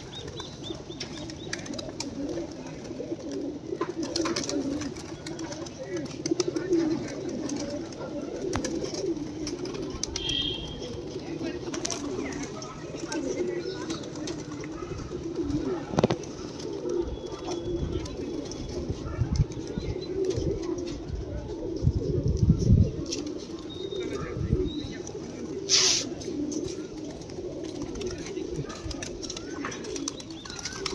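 A large flock of domestic pigeons cooing continuously, with wings flapping at times. A few low thumps come in the second half, and a sharp click near the end.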